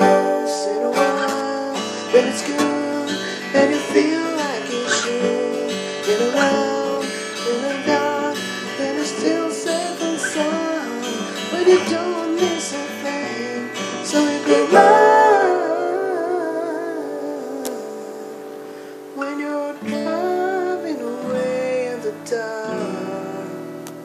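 Acoustic guitar strummed and picked, with a man singing over it. The playing thins out a little past the middle, then picks up again.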